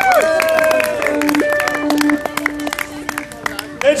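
Crowd clapping and applauding, with held notes from the band's amplified instruments ringing underneath.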